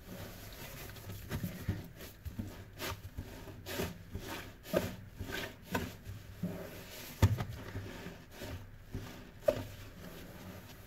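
Wet, soapy foam sponges pressed and rubbed by gloved hands against a stainless steel sink, making irregular squishing and rubbing strokes. A sharper squelch comes about seven seconds in and another near the end.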